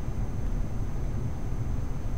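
Steady low hum with a faint hiss underneath: the constant background noise of the recording room and microphone, with no distinct events.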